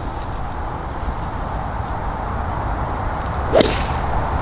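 Golf club swung from the tee and striking the ball, one short sharp hit about three and a half seconds in, over a steady rumble of wind on the microphone.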